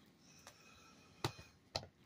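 A few light clicks of a plug and cord being handled at a power strip, the sharpest two in the second half, over quiet room tone.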